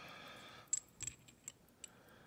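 Light metallic clicks as small steel deep sockets are handled and fitted against a lock cylinder: about four sharp, separate taps in the second half.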